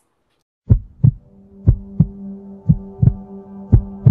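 Heartbeat sound effect in a closing sound logo: paired lub-dub thumps about once a second, starting after a brief silence, with a steady low hum droning beneath from about a second in.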